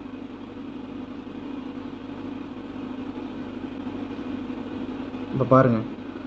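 A steady low hum of background noise with no clear events, and a short spoken word near the end.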